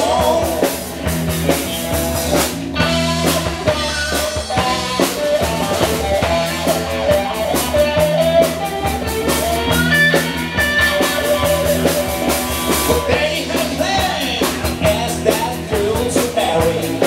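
Live rock band playing: electric guitars, bass guitar and drum kit, with a male singer's vocals.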